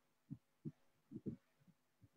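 Near silence with a handful of faint, short, low thumps, two of them close together a little after a second in.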